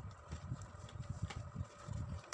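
Cardboard boxes of sparklers being handled and set into a row: a quick, irregular series of light knocks and thumps.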